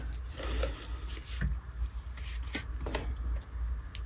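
Packaging being handled in a cardboard shipping box: scattered crinkles, rustles and small clicks as items are moved and a boxed eyeshadow palette is pulled out. A low steady hum runs underneath.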